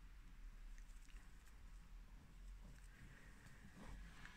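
Near silence: faint soft ticks and rustling of a metal crochet hook pulling acrylic yarn through stitches, over a low steady hum.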